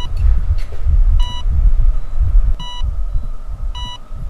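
Four short electronic beeps at an ambulance, evenly spaced a little over a second apart, over a loud low rumble.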